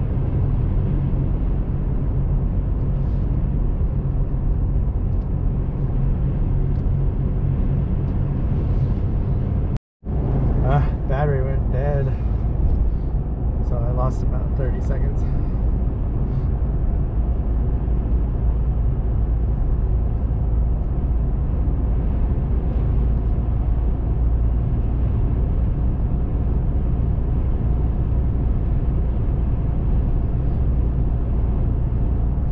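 Steady low road and engine noise of a car driving at road speed, heard from inside the cabin. The sound cuts out for a moment about ten seconds in.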